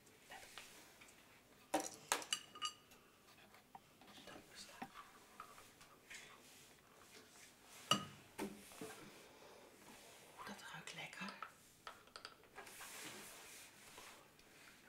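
Quiet room with faint, soft whispered or murmured voice sounds and a few small clicks, the sharpest a single tap about eight seconds in.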